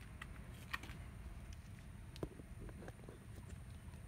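Quiet background with a steady low hum and a few faint, short clicks and taps.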